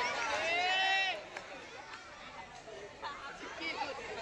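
A loud, high-pitched held shout of about a second, falling away at the end, from a kabaddi player or onlooker. After it comes quieter overlapping chatter of young voices around the court.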